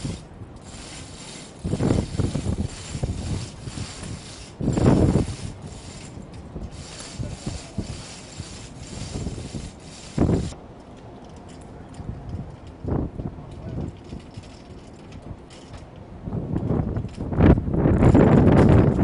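Chain hoist being worked to lift a RAM missile round: the chain runs through the hoist with ratchet clicks and clanks. The sound comes in irregular bursts separated by quieter stretches.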